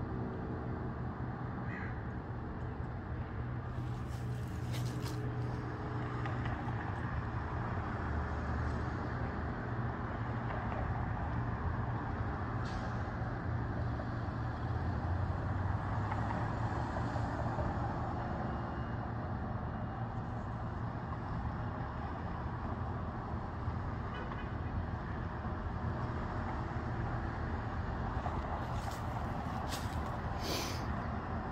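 Steady road traffic rumble, continuous and even throughout.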